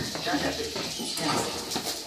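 Faint, broken-up voices of people and small children talking in a room, much quieter than the speech just before.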